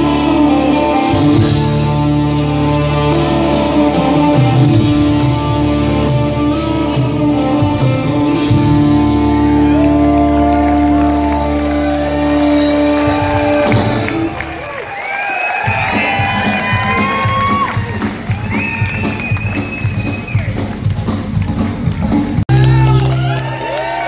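Live rock band of electric guitars, bass guitar and drums ending a song on a long held chord. About 14 seconds in the band stops and the audience cheers, whoops and applauds, with an abrupt cut in the sound near the end.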